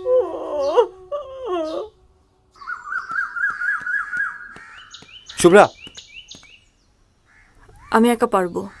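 Birds calling: a repeated warbling call, then a single loud caw about halfway through, after a short wavering, wailing voice at the start.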